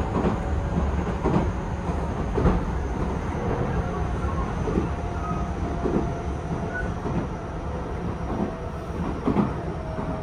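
Running noise heard from inside a Tobu 10000-series-family electric commuter train at speed: a steady rumble with the wheels clacking over rail joints every second or two.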